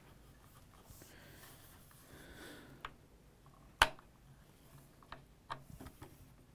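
Handling noise from a wooden-stocked PCP air rifle being felt over on a table: a faint rustle, then a single sharp click of the rifle's metal parts a little past the middle, followed by a few softer clicks near the end.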